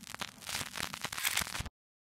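Crackling, scratchy old-film sound effect under an outro card: a dense run of irregular clicks and static that cuts off suddenly before the end.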